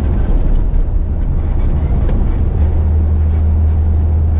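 Air-cooled 2.2-litre flat-six of a 1970 Porsche 911T heard from inside the cabin while driving, a steady low drone that grows stronger about two-thirds of the way in.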